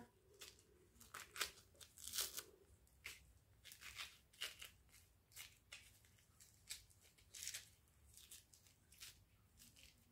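Mandarin peel being torn off by hand: many short, faint tearing sounds at irregular intervals.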